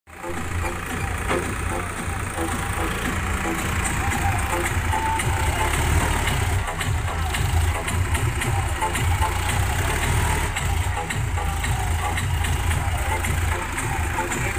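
Tractor engine running steadily with a constant low rumble.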